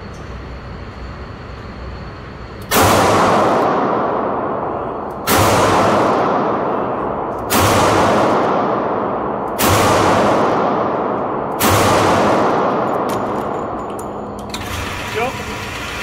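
Five shots from a Smith & Wesson 642 snub-nosed, five-shot .38 Special revolver, fired double action at an unhurried pace about two seconds apart, each report trailing off over a second or two. The rounds are 158-grain Norma hollow points, a load called pretty mild.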